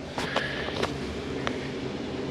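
A steady low mechanical hum with a few light clicks and knocks.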